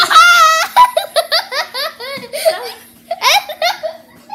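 Boys laughing loudly: a long high-pitched laugh, then a quick run of short laughs, with another burst near the end.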